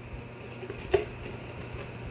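Small personal evaporative air cooler's fan running with a steady low hum, and a single sharp knock about a second in from the cardboard box being handled.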